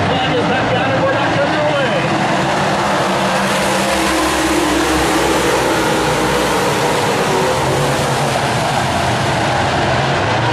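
A field of Super Late Model dirt-track race cars, their V8 engines running hard together on a restart. The sound swells about three and a half seconds in and eases near the end.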